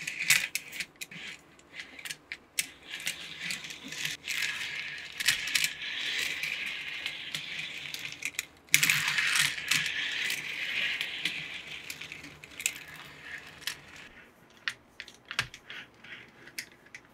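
Small plastic toy cars rolling along a plastic track under a finger, with their wheels rattling and clicking over the track. The rolling runs for about eight seconds, breaks off briefly, starts again loudly and dies away near the end, leaving a few scattered clicks.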